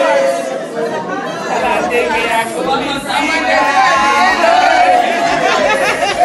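Several women talking at once: overlapping chatter with no single voice standing out.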